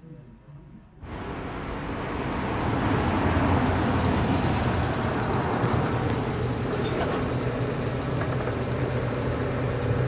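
A car engine running, with street traffic noise around it. It comes in suddenly about a second in, swells over the next two seconds, then holds steady with a low hum.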